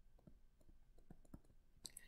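Near silence with a scattering of faint, irregular ticks: a stylus tapping and sliding on a tablet screen while handwriting.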